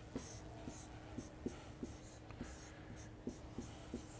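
Chalk writing on a blackboard: a run of about ten light taps with short scratchy strokes between them as an equation is written out, faint against the room.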